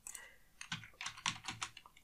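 Typing on a computer keyboard: a quick run of keystrokes starting a little over half a second in.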